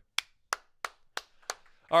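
One person clapping: five sharp hand claps, about three a second.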